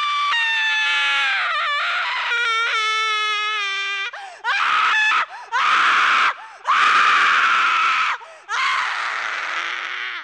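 A high-pitched voice screaming in long held cries that slide in pitch, with short breaks between cries in the second half.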